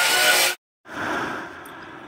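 Angle grinder with a wire cup brush scouring old crud and rust off a steel-plate wood stove top. It runs with a steady whine for about half a second and then cuts off suddenly, followed by a quieter rushing noise that fades away.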